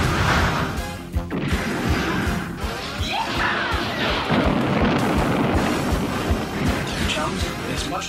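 Cartoon battle sound effects of laser fire and an explosion, played over dramatic background music.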